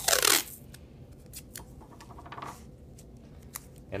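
Masking tape pulled and torn off its roll in one short, loud rasp about the first half second in. This is followed by quieter rustles and light taps of tape and cardboard being handled and pressed together.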